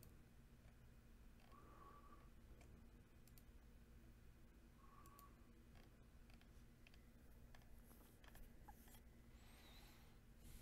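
Near silence: room tone with a faint steady low hum and a few scattered faint clicks.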